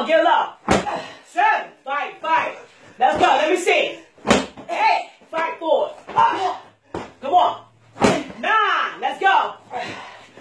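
A medicine ball slammed onto a concrete floor three times, about every three and a half to four seconds, each landing a sharp smack. A voice talks between the slams.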